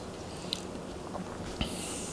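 Faint mouth sounds, a couple of small lip or tongue clicks, from a person tasting a drink, over quiet room tone.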